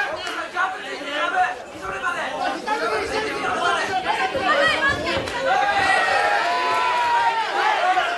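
Many voices shouting and calling out over one another in a hall, spectators and cornermen yelling at the fighters, with one long drawn-out shout near the end.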